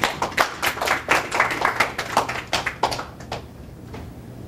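Brief applause from a small audience: separate hand claps that can be told apart, thinning out and stopping a little over three seconds in.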